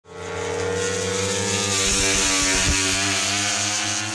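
Motorcycle engine running at high, steady revs, its pitch sinking slightly, with a few brief low thuds about two seconds in.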